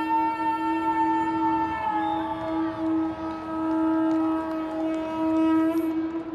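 Long, held calls at several overlapping pitches, each note sustained for seconds; the highest slides slowly downward.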